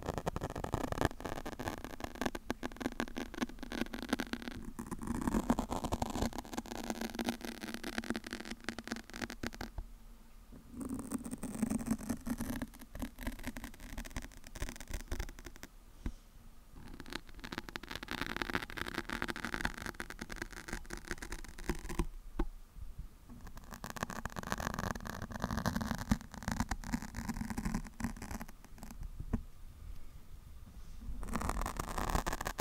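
Long fingernails scratching and rubbing on a foam microphone windscreen right at the microphone, a dense crackling scratch. It comes in stretches of a few seconds, with brief pauses about every six seconds.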